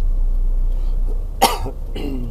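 One short, sharp cough about one and a half seconds in, over the steady low rumble of the car's engine and road noise inside the cabin.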